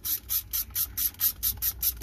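A small ratchet with a 12 mm socket clicking in quick, even strokes, about four or five a second, as it tightens the nut on a starter solenoid's battery terminal.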